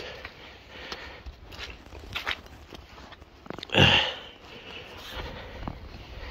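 A single loud sniff about four seconds in, over faint scattered rustles and steps.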